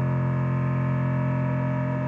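A distorted electric guitar chord held as a steady, unchanging drone through an amplifier.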